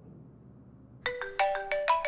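Smartphone ringtone for an incoming video call: a quick melody of bright, chime-like notes that starts about a second in.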